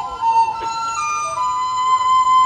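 A Chinese traditional orchestra playing a song's instrumental introduction: a wind instrument carries the melody in long, held notes that step from one pitch to the next.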